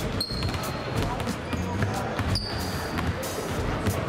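Several basketballs bouncing irregularly on a wooden sports-hall floor as players dribble, with brief high squeaks from sneakers on the floor.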